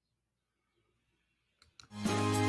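Near silence, with a few faint clicks in the last half second as the show's intro music begins to come in.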